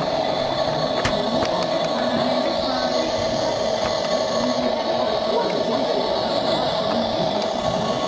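Remote-control Halo toy tank running, its electric motor giving a loud, steady whir while the controller buttons are held.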